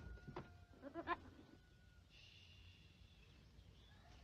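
A goat bleating once, faintly, a short wavering call about a second in.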